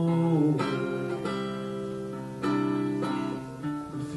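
Acoustic guitar strummed in a country-folk song: about four chords, each struck and left to ring. The tail of a held sung note fades out in the first half second.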